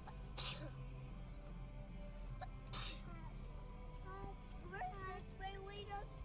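Steady low drone of a vehicle heard from inside the cabin while driving a snowy forest track. Two short hissing bursts come in the first three seconds, and a small child's sing-song voice runs through the last two seconds.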